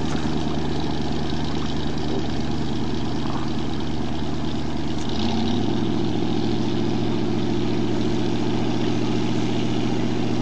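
A classic wooden speedboat's inboard engine running steadily at low revs, then picking up speed about halfway through and holding at the higher revs.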